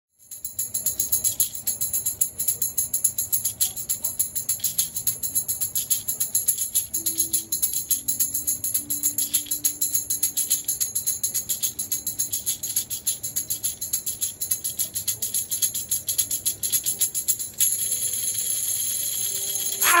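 VOLT Tambourino mini tambourines, small wooden blocks with brass jingles, shaken in a fast, even rhythm of sharp jingling strokes. Near the end the strokes merge into a continuous shaking roll, cut off by a short shout.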